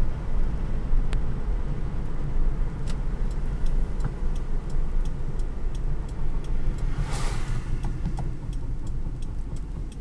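Road and tyre noise inside the cabin of an electric-converted Toyota Tercel on the move, a steady low rumble with scattered light clicks and rattles. About seven seconds in, an oncoming car rushes past.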